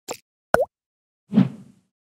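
Short synthesized sound effects for an animated logo: a brief tick, then a sharp pop with a quick swoop in pitch, then a softer, lower thud that trails off, with silence between them.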